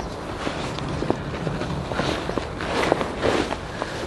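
Nylon camouflage pouches and webbing rustling as they are handled and turned, with a few light clicks from the plastic connectors.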